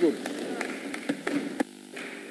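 About six scattered sharp knocks and claps over murmuring voices: legislators applauding by thumping their desks at the end of a speech. The sound cuts off sharply near the end, leaving a faint steady hum.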